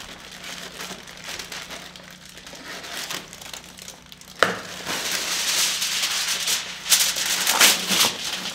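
Reynolds Wrap heavy-duty aluminium foil being pulled from its box and torn off, crinkling. It starts with a sharp click about four and a half seconds in, then gets louder, with a couple of sharp crackles near the end as the sheet is torn.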